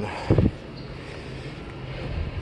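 A brief low thump about a third of a second in, then a steady low outdoor background rumble.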